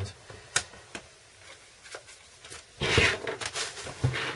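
A single sharp click about half a second in and a few faint handling taps, then near the end a loud crinkling rustle of bubble wrap being handled.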